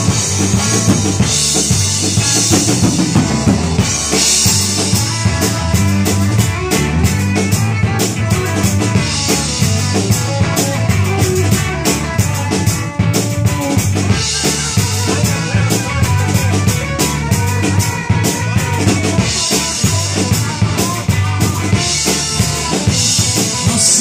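Live rock band playing an instrumental stretch without vocals: a full drum kit keeps a steady snare and bass-drum beat under electric guitars and bass guitar.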